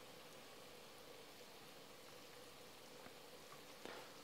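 Near silence, with the faint, even bubbling of 1:1 sugar syrup simmering in a pot.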